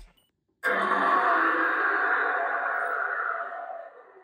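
A long breathy hiss, like a drawn-out exhale, that starts suddenly about half a second in and fades away over some three seconds.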